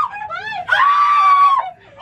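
A person screaming in a high voice: a short wavering cry, then one long held scream of about a second that cuts off near the end.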